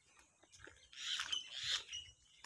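A bird giving a harsh, raspy call about a second long, starting about a second in, with two peaks.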